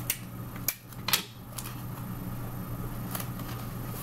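Clear sticky tape pulled off a desk dispenser and torn, heard as a few short rasps in the first second or so and one more about three seconds in, over a steady low hum.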